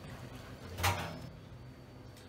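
A single dull knock about a second in, over a faint steady low hum.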